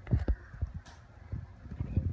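A toddler's irregular footsteps thumping on a hard wooden floor, with a brief rustle of the blanket wrapped around him a little under a second in.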